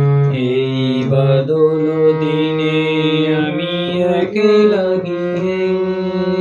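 Harmonium playing a slow introductory melody of held reedy notes over a sustained low drone note.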